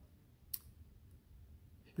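Near silence: room tone, with a single short click about half a second in.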